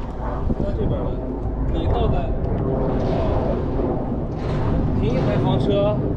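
Indistinct voices of people talking off and on, over a steady low rumble.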